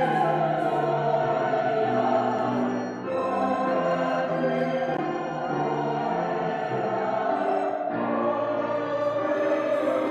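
Congregation and choir singing a hymn together, in sustained phrases with brief breaths between them about three and eight seconds in.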